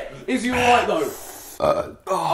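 A man burping just after gulping down a bottled drink, in two short parts: a voiced sound in the first second and a brief rough burst near the end.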